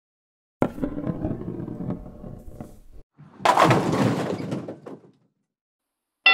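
Sound effects of a bowling ball dropped overboard: a sudden heavy impact about half a second in with a rumble that fades over a couple of seconds, then a second, brighter crash about three and a half seconds in.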